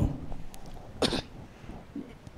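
A man's single short cough into a handheld microphone, about a second in, during a pause in his speech.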